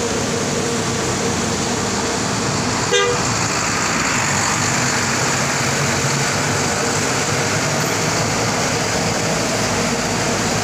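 Coach bus running as it pulls away, with one short horn toot about three seconds in.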